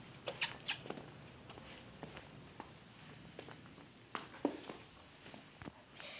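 Faint, irregular light taps and scuffs of footsteps and phone handling on a concrete patio, with a couple of short high squeaks about half a second in.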